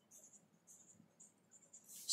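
Faint scratching of a pen writing on paper, a string of short strokes with small gaps between them as letters are written.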